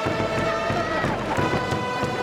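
Japanese pro-baseball outfield cheering section in full cry: trumpets holding a cheer melody over a drumbeat, with thousands of fans chanting along. The trumpet notes change about a second in.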